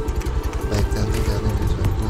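Motorcycle engine running steadily as the bike is ridden over a rocky trail.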